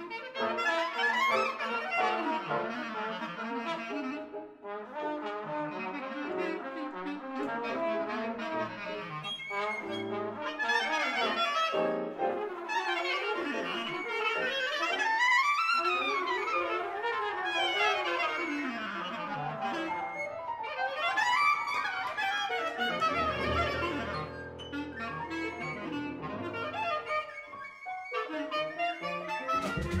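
Live jazz: trumpet and a reed instrument play together in fast runs that sweep up and down. Near the end the horns settle onto several seconds of steady held low tones.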